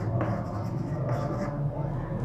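Chalk scratching on a blackboard as a word is written out by hand.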